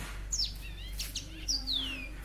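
Small birds chirping: a few quick high notes, then a long whistle sliding down in pitch near the end.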